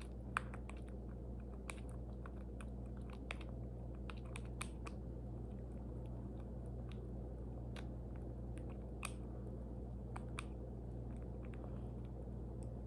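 Baby squirrel suckling formula from a feeding syringe: small, irregular wet clicks and smacks, a few a second. A steady low hum runs underneath.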